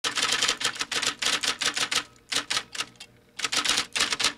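Typewriter sound effect: rapid key clacks in quick succession, thinning to a few strikes after about two seconds, then a short gap and another fast run near the end.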